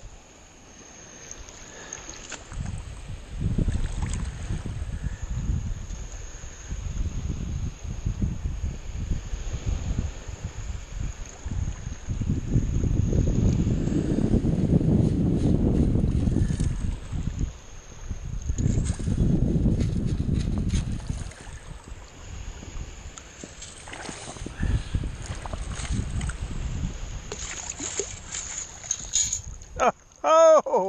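Water sloshing and swishing as a long-handled steel sand scoop is worked into the sandy bottom in shallow water, in uneven surges that are loudest in two stretches in the middle. Near the end comes a crackly rattle as shells and gravel are shaken in the scoop's perforated steel basket.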